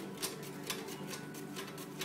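A large black truffle shaved on a steel mandoline truffle slicer: a rapid, even run of short scraping strokes across the blade, several a second.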